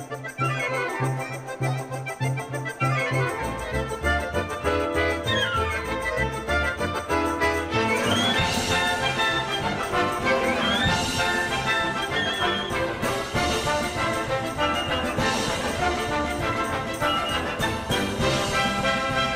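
Lively Russian folk dance music played by an orchestra with accordion and brass over a quick, regular beat; the music grows fuller about eight seconds in.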